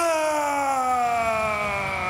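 Ring announcer's drawn-out call of the winner's name, the final syllable held long and sliding slowly down in pitch before fading out.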